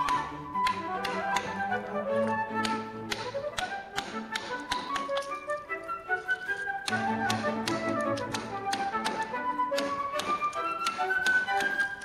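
Wooden mallet striking a carving gouge into a block of wood, a run of sharp taps about two to three a second, heard over background music with a flute melody.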